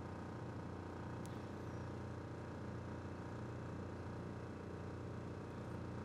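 Quiet room tone with a steady low hum and no speech, with one faint tick about a second in.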